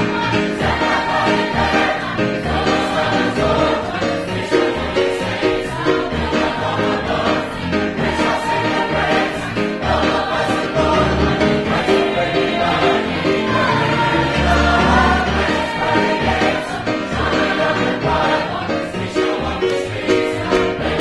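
A mixed choir of men and women singing a gospel song together.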